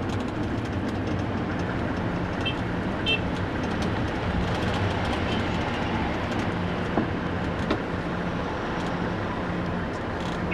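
Engine and road noise inside a moving van's cabin: a steady low engine hum under constant road rumble.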